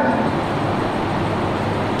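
Steady, even rushing background noise with no speech.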